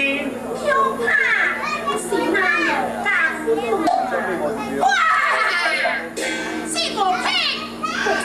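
Teochew opera actors' stylized, high-pitched stage speech, the voices gliding up and down in pitch, over a steady low hum.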